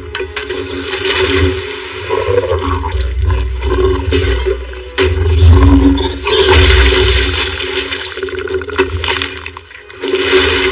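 Action-film sound effects of a creature fight: dense rushing, splashing noise with crashing and breaking, and sudden heavy impacts about five and six seconds in.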